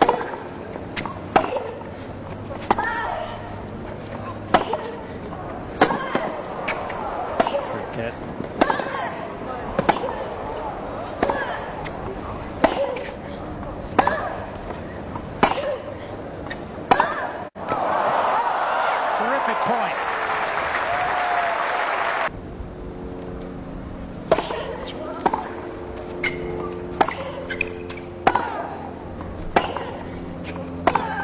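Tennis ball struck with rackets in a long baseline rally, a sharp hit about every second and a half. The rally ends and the crowd applauds for about four seconds, then sharper hits come again about once a second as the next point gets under way.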